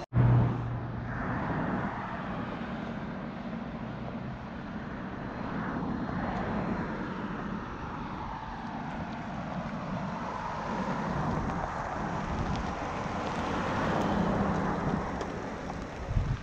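A 2006 GMC pickup truck driving across a wet gravel lot toward the camera and pulling up alongside. Its engine and tyre noise grow steadily louder as it nears, and are loudest shortly before it stops beside the camera.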